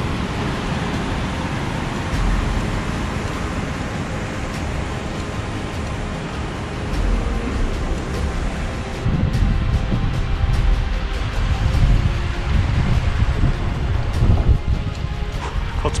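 Steady rush of a whitewater mountain stream mixed with wind noise on the camera microphone as the bike rolls along. From about halfway, low wind buffeting on the microphone grows stronger and uneven.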